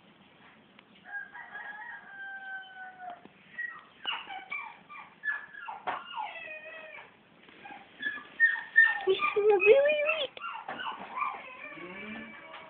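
A series of high-pitched animal calls: a sustained whine about a second in, then many short squeaks and cries, with a louder rising call near the ten-second mark.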